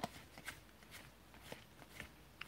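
Faint clicks and light rubbing of cardboard trading cards, 1992-93 Topps basketball cards, being slid off a stack one at a time, a soft card snap about every half second.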